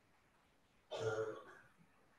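A man clearing his throat once, briefly, about a second in, against faint room tone.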